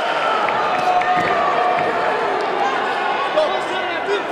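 Arena crowd in a large hall, many voices shouting and calling at once during a kickboxing bout, with steady loudness throughout.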